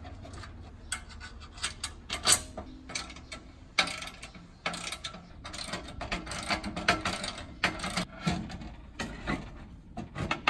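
Socket ratchet wrench clicking in runs as a nut is turned onto a bolt through an aluminium tray's mounting bracket, the bolt held with a screwdriver. Sharp metal clinks and knocks on the sheet aluminium come in between.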